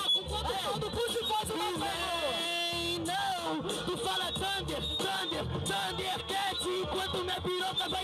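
A man freestyle rapping into a microphone over a hip-hop beat with a pulsing low bass line.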